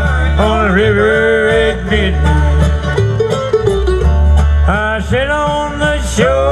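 Bluegrass band playing live: banjo, guitar, mandolin, dobro and upright bass, with a lead melody line that slides and bends in pitch over a steady bass.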